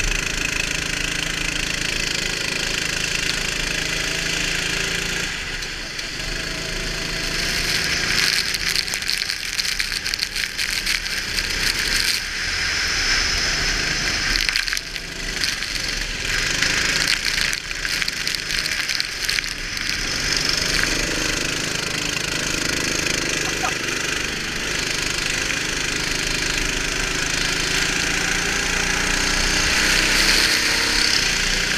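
Go-kart engine heard from on board, its pitch rising and falling with the throttle through the corners, under a loud steady hiss of wind and water spray off the wet track. Rattling and crackling come through, mostly in the middle stretch.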